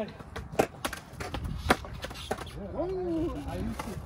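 Skateboard clacking against concrete: a few sharp knocks, the two loudest about a second apart in the first half. A man's voice follows near the end.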